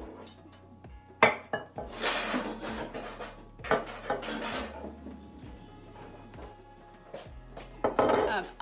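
Background music, with kitchen handling noises over it: a sharp knock a little over a second in, then two short spells of rustling and scraping from bowls and a glass oil bottle being handled.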